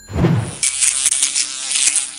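Edited intro sound effects: a low whoosh, then a rapid buzzing rattle lasting about a second and a half that cuts off suddenly.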